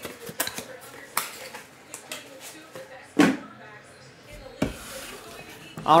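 Handling noise of a small cardboard trading-card box and cards on a tabletop: scattered light clicks and taps, with a louder knock about three seconds in and another near the five-second mark.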